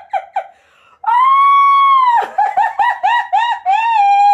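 A woman laughing hard: a few quick laughs, a short pause, then a long high-pitched shriek of laughter lasting about a second, followed by rapid rhythmic laughs of about four a second and another high held cry starting near the end.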